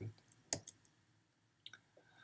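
A sharp click about half a second in, followed by a few fainter clicks, from the computer as the lecture slide is advanced.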